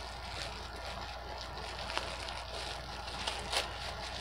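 Faint rustling of plastic packaging being handled, with a few soft clicks, over a steady low background hum.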